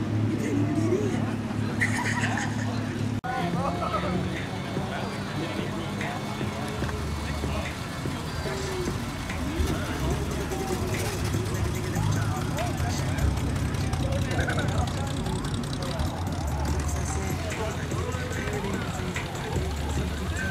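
Car engines idling and running low and steady as cars roll slowly past, over a crowd of people talking.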